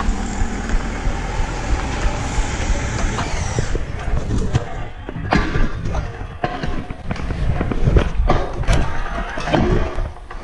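Trick scooter's wheels rolling on pavement with a steady rumble, then, from about four seconds in, a string of sharp knocks and clatters as the scooter is ridden over the garage threshold and handled.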